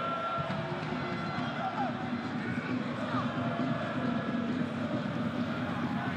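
Football stadium crowd noise: a steady din of many supporters' voices, with some chanting in it.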